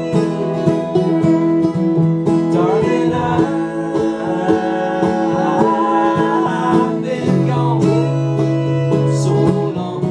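Live acoustic bluegrass band playing an instrumental break: bowed fiddle over strummed acoustic guitar, picked banjo and upright bass.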